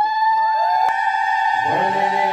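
Voices chanting a long held devotional note. The note slides up at the start and then holds steady, and a lower voice slides up to join it near the end.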